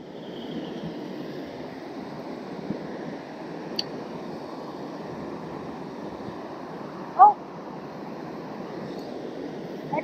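Waterfall and river rapids rushing steadily. A short pitched sound cuts in briefly about seven seconds in.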